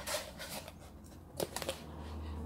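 Handling noise from a phone being moved by hand: a few faint short rustles and clicks over a low steady hum.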